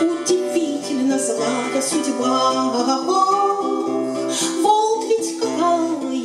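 A woman singing to her own strummed acoustic guitar.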